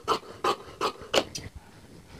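Large tailor's shears snipping through several layers of cotton dress fabric, blade strokes at about three a second, stopping about a second and a half in as the cut is finished.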